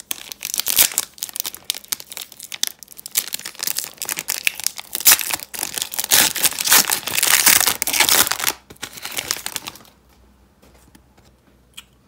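Foil trading-card pack wrapper crinkling as it is handled and torn open by hand, densest around six to eight seconds in and stopping about two seconds before the end.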